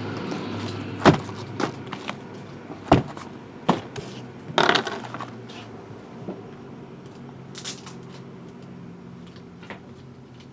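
Cardboard trading-card boxes in plastic shrink-wrap being handled and set down on a table: a few sharp knocks in the first half, the loudest about three seconds in, and a brief rustle near the middle, then only faint ticks. A low steady hum runs underneath.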